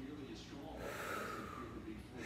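A man's faint breath, a soft rush of air lasting about a second, starting about half a second in.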